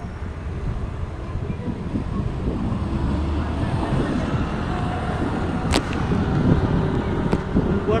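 Street traffic passing through an intersection: cars and a motorcycle with a steady low rumble. Two sharp clicks come about six seconds in and again about a second and a half later.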